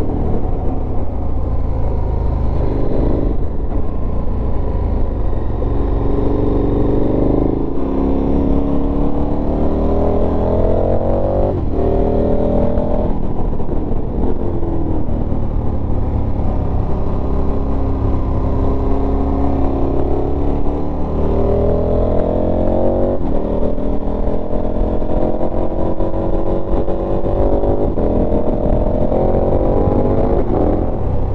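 KTM 1290 Super Adventure S's V-twin engine pulling on the move, its pitch climbing and then dropping sharply several times as it shifts up through the gears, over a steady low wind rumble.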